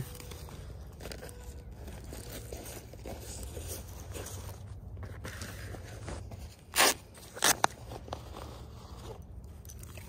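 Handling noise from a nylon soft rifle case and its accessories: a low steady rumble, then two short loud scraping or rustling noises, about half a second apart, roughly seven seconds in.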